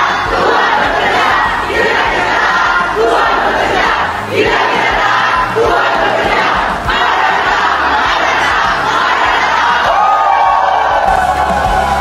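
A large crowd of people shouting and cheering together in a series of loud shouts, with music playing underneath. Near the end the shouting dies away and the music stands out more.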